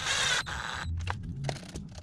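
Cordless drill/driver with a long hex bit running briefly as it drives a screw into the RC truck's steering servo mount, stopping about half a second in. A few light clicks follow.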